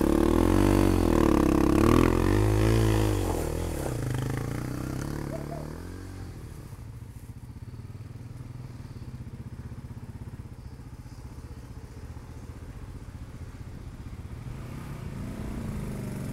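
Dirt bike engine revving, its pitch rising and falling, for about the first five seconds, then dropping away to a quieter, steady low engine rumble that grows a little louder near the end as the bike comes back.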